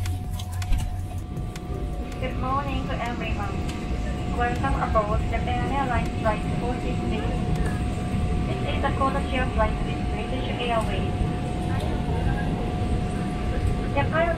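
Boeing 777-300ER cabin noise during pushback: a steady low rumble with a steady tone above it. From about two seconds in, an announcement plays over the cabin speakers.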